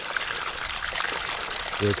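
Water pouring steadily from a sump pump's corrugated discharge hose into a catch basin, an even rushing splash.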